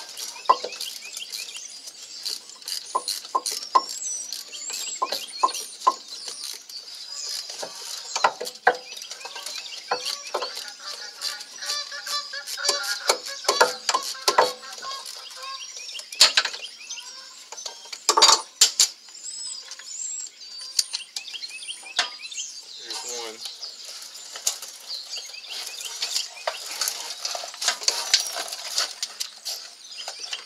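Hand tools on a rear brake caliper: a ratchet with a T30 Torx socket clicking and metal parts clinking as the electronic parking brake actuator is unbolted, with a few sharper knocks partway through. Birds chirp throughout.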